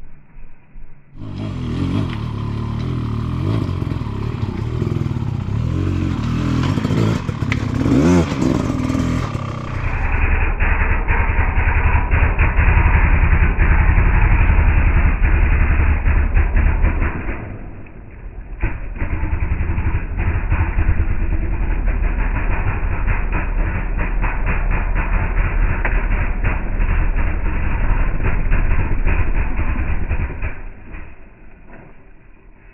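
Off-road dirt bike engine revving under load as the bike climbs a rock step, its pitch rising sharply about eight seconds in. From about ten seconds the engine keeps running hard and fairly steadily, dropping briefly near eighteen seconds.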